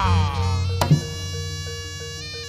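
Traditional Javanese barongan ensemble music played live: a high note with many overtones slides down at the start, a single sharp percussion stroke comes just under a second in, and held ringing tones over a low drone carry on after it.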